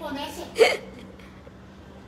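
A person's voice briefly, then a short sharp vocal sound, like a hiccup or clipped laugh, about half a second in. After that only a faint steady hum is left.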